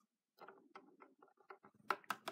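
Small plastic toy figures handled on a wooden tabletop: a run of faint light clicks and taps, with a few louder clicks near the end.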